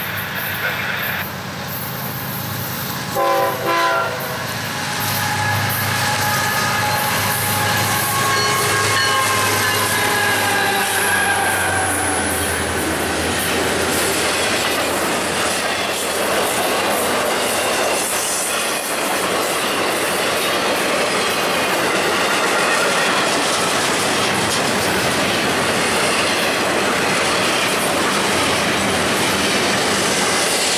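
Diesel freight locomotives, an FEC GE ES44C4 and an EMD SD40-2, give a brief horn toot about three seconds in, then run past with their pitch slowly falling. After that a long string of loaded freight cars rolls by with steady wheel-on-rail noise and some wheel squeal.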